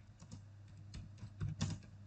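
Computer keyboard being typed: a run of irregular light keystroke clicks, the loudest pair about one and a half seconds in.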